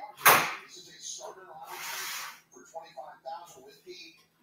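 Low, indistinct voices in the background. There is a sharp, short noise about a third of a second in and a breathy hiss around two seconds in.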